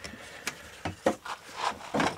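Handling noise from a folded agricultural spray drone being gripped and lifted: a string of short clicks and knocks from its frame and arms.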